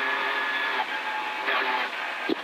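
Toyota GR Yaris rally car's turbocharged three-cylinder engine running hard at speed, heard thinly through the in-car intercom with the low end cut away; its pitch shifts as the revs change.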